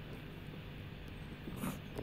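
Faint steady background noise, with a short soft sound near the end.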